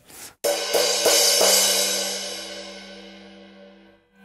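Red Paiste Color Sound 900 16-inch crash cymbal struck about half a second in, then ringing out and fading away over about three seconds. The player hears this crash as a little too metallic and dry, and puts the dryness down to the colour coating cutting its sustain.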